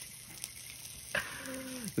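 Faint, steady sizzle of food cooking in a hot pan. A short hummed 'mm' of someone tasting comes near the end.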